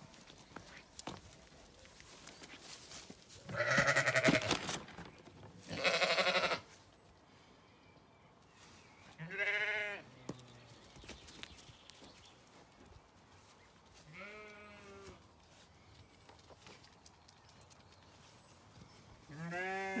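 Zwartbles sheep bleating, five separate calls: two rough, wavering baas close together in the first few seconds, then three clearer, steadier baas spaced several seconds apart.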